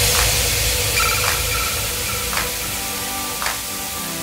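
Electronic outro music: a wash of noise slowly fading after a heavy hit, with faint held tones and soft hiss-like beats about once a second.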